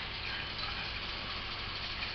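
Steady low hum with a faint hiss of running water, from the small fountain pump circulating ice water through the still's condenser.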